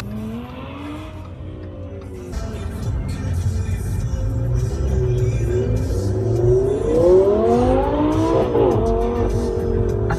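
Lamborghini Gallardo Spyder's V10 engine revving as the car accelerates away. Its note rises several times over a low rumble, climbing highest about three-quarters of the way through, then drops sharply.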